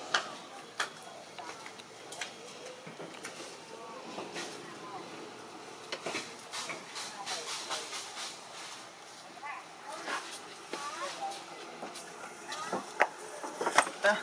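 Indistinct voices in the background with scattered sharp clicks and taps, growing louder and busier near the end.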